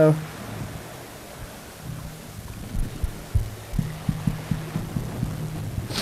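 Steady low electrical hum with a run of short, soft low thumps starting about two seconds in: handling noise on a handheld microphone.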